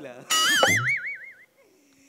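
Comic sound effect: a sudden loud hit, then a wobbling, warbling tone that climbs in pitch and fades out within about a second.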